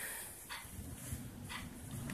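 Pen writing digits on notebook paper: a few faint, brief scratches.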